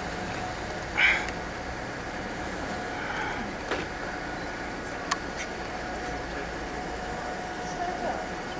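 Steady outdoor hum of distant city traffic heard from high above, with a faint steady tone, a few light clicks and a brief louder sound about a second in.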